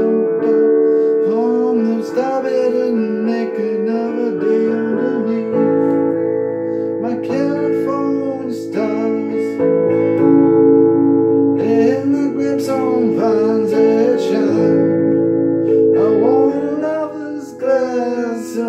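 Electric guitar instrumental break between sung lines: held chords with gliding, bent lead notes played over them.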